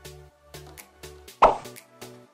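Background music with a regular beat of repeated notes, and one loud pop sound effect about one and a half seconds in.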